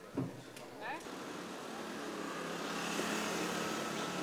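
A motor vehicle, its engine noise growing louder from about a second in and then holding steady as it draws close, with people's voices around it.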